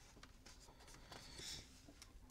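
Near silence, with a faint, brief rustle of paper about a second and a half in: a picture-book page turning.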